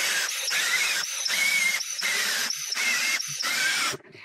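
A man blowing forcefully into a balloon through a bottle-cap nozzle glued to the centre hole of a CD, inflating it in about six or seven hard breaths with short pauses between them. The rushing air carries a wavering, squealing whistle.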